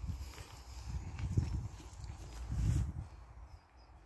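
Footsteps of a person walking over grass and stone paving, with two low rumbles on the microphone about one and a half and nearly three seconds in.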